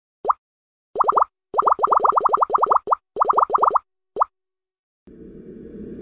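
Intro sound effect of cartoon-style plops: a quick run of short blips, each rising in pitch, coming in several rapid clusters. About five seconds in, a swelling whoosh of noise begins and keeps building.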